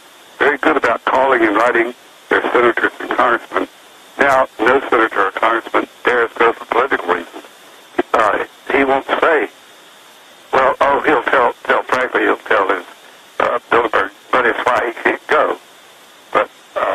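Speech only: a man talking in phrases with short pauses, his voice thin and narrow as if over a telephone line.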